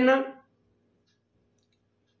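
A man's spoken Hindi word tails off in the first half-second, then near silence, as if the sound track is gated, until the end.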